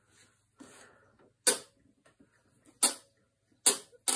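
Four sharp clicks, roughly a second apart, the last three loud: handling noise from a gunstock held in a clamped bending jig.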